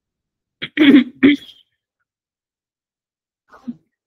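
A woman coughs, a short cluster of three rough throat-clearing coughs about a second in. A faint brief sound follows near the end.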